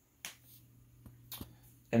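A few short, sharp clicks in a pause between words: one shortly after the start and a close pair a little past the middle.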